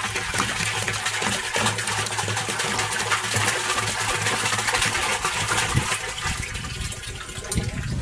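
Water pouring from a plastic jerrycan into a plastic barrel, a steady gushing splash that stops right at the end.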